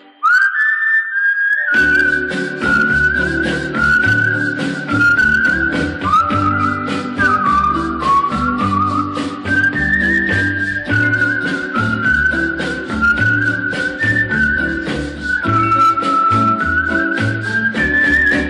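Recorded song in a whistled passage: a whistled melody over a band with bass and a steady beat. The whistling begins alone, and the band comes in about two seconds in.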